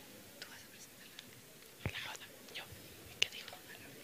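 Faint whispering voices with scattered small clicks and knocks, one sharp click a little after three seconds.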